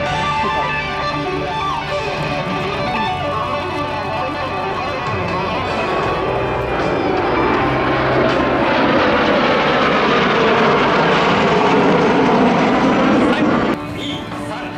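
Music with guitar, overtaken about halfway through by the rising jet noise of a Blue Impulse formation of Kawasaki T-4 jets passing overhead. The jets are loudest near the end, and the sound drops off suddenly.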